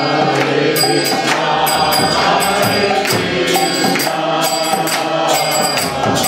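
Kirtan music: a harmonium plays sustained reed chords under chanting voices, while hand cymbals (kartals) strike a steady beat.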